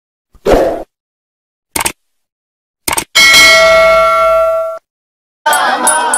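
Intro sound effects: a short noisy burst and two brief clicks, then a bell-like chime that rings for about a second and a half and cuts off suddenly. Near the end, music with a hand drum starts.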